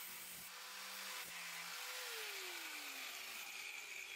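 Small angle grinder's motor whirring faintly at speed, then winding down with a falling whine after it is switched off.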